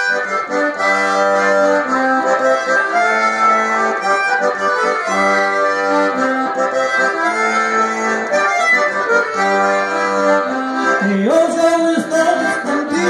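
Solo accordion playing an instrumental passage of a lively gaúcho folk melody, with chords over regularly repeated bass notes. A man's voice comes in near the end.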